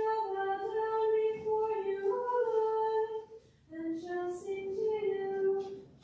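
A woman's solo voice singing slow, long-held notes at church. It breaks off briefly a little past halfway, then carries on.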